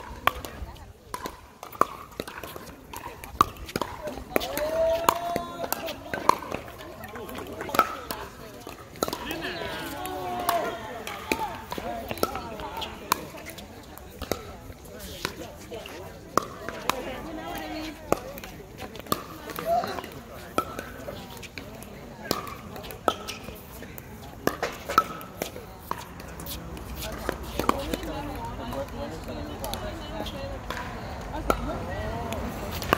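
Pickleball paddles striking the hard plastic ball, with ball bounces on the court: sharp pops at irregular intervals from several courts at once, over the voices of players and onlookers.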